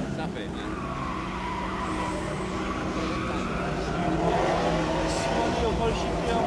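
A hillclimb competition car's engine revving hard as it climbs the course, its pitch repeatedly rising and falling through the gears and growing louder about two-thirds of the way through.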